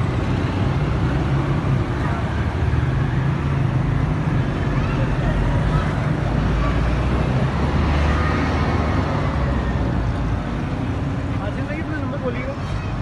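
Steady road traffic noise from passing cars and motorbikes, engines running in a constant rumble, with indistinct background voices.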